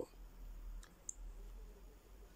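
A quiet pause with a steady low hum and two faint short clicks about a second in.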